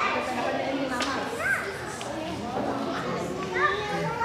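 Young children's high voices chattering and calling out over a murmur of other voices in a large hall; a child's voice rises in pitch near the end.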